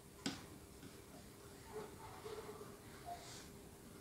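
Near silence: faint room tone with a low steady hum, one soft click just after the start, and a few faint touches of a fan brush working oil paint on canvas.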